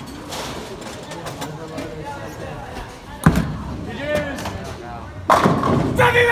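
A bowling ball hitting the pins with one loud crash about three seconds in, followed near the end by a burst of shouting and cheering from the bowlers.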